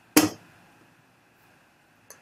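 Mostly quiet room tone with a faint steady hiss, broken just after the start by one short, sharp sound.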